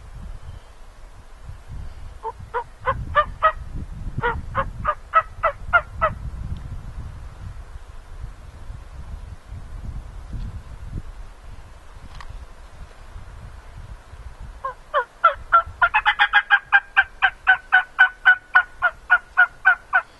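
Turkey mouth call worked by a hunter to imitate a hen: two short runs of yelping notes about two and four seconds in, then a longer, faster and louder run of yelps through the last five seconds.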